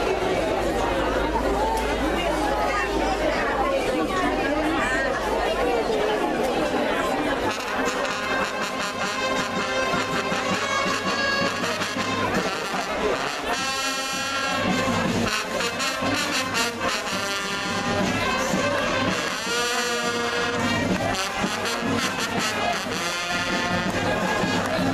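Voices chattering, then a wind band of brass and saxophones begins playing about seven seconds in, with trombones and trumpets carrying the music.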